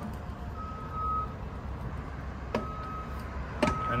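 Stunt scooter wheels rolling on concrete pavement in a steady low rumble, with two sharp knocks about two and a half seconds in and a second later as the scooter meets the ledge.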